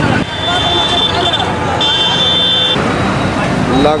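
Road traffic and vehicle noise, with two long, high-pitched steady beeps, each about a second long, near the start.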